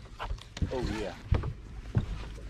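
Dull knocks of movement and handling in a bass boat, the sharpest about a second and a half in and at the end, with a brief spoken word or exclamation from a voice about half a second in.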